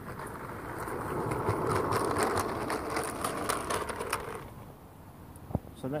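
G-scale model railway coaches rolling along garden track: a rumble of small wheels on rails with fine clicking. It swells, then fades out about four and a half seconds in.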